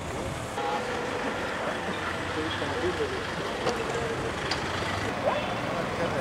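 Cars running as they move slowly past, a steady hum of engines and street noise, with scattered voices of people around them.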